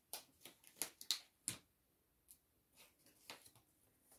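Faint, quick light clicks and taps from hands handling small plastic seedling cups and seeds while sowing, about seven in the first second and a half, then a few fainter ones.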